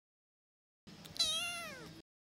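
A single cat meow, starting about a second in, rising slightly and then sliding down in pitch as it ends.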